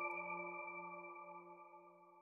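The final chord of a short electronic logo jingle ringing out: several held tones, low to high, fading away over about two seconds.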